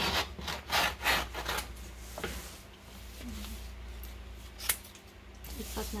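Scissors cutting along the edge of a large vinyl wall-decal sheet and its backing paper: a quick run of snips in the first second and a half, then quieter rustling of the sheet on a wooden table, with one sharp click about three quarters of the way through.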